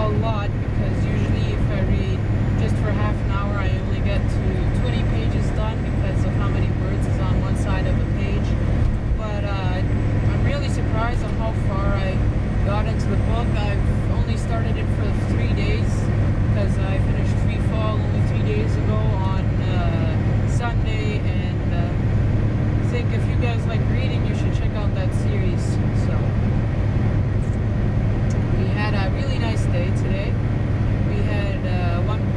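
Tractor-trailer diesel engine and road noise droning steadily inside the cab at highway cruising speed, with a quieter voice in the background.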